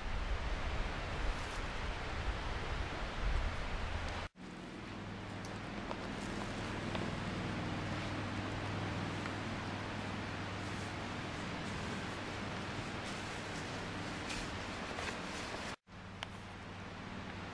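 Steady outdoor background hiss with a faint low hum, under soft rustles and light scrapes of a spoon scooping wood shavings into a metal pot. The sound cuts out briefly twice, at about four seconds and near the end.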